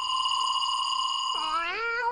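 A steady, held high note from the jingle ends about one and a half seconds in. A kitten's meow starts at the same time and rises in pitch.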